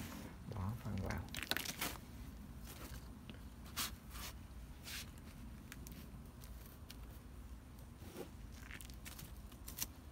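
Hands working potting soil in a plastic-lined wicker hanging basket: the plastic liner crinkles and the soil rustles. The crackles are scattered and short, busiest in the first two seconds and again near the end.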